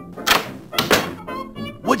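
Two heavy thuds on a wooden door, about half a second apart, over background underscore music.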